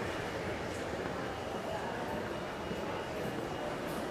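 Steady background noise of a large building lobby, with a faint high-pitched steady tone running through it.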